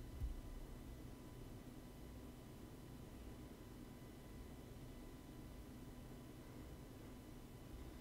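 Near silence: faint room tone with a low rumble and a faint steady high tone, and a small click just after the start.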